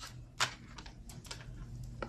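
Tarot cards being handled as a card is drawn: one sharp click and a few faint ticks, over a low room hum.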